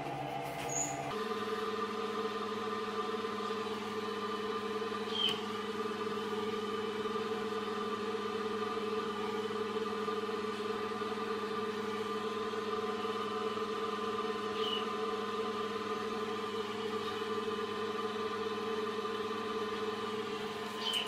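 Incubator fan motor running with a steady hum, its tones shifting once about a second in. A few faint, brief high chirps are heard over it.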